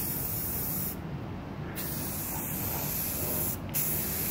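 Rust-Oleum gloss clear aerosol can spraying clear coat in short passes: a high hiss for about a second, a brief stop, a longer hiss of nearly two seconds, then another quick stop before it starts again near the end.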